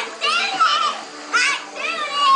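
Young girls' high-pitched excited voices in three short outbursts, over music playing in the background.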